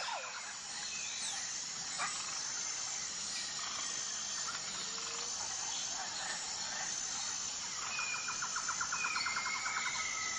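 Outdoor nature ambience of birds and insects: a steady insect hum with scattered bird chirps and short gliding calls, and a rapid, evenly pulsed trill coming in about eight seconds in.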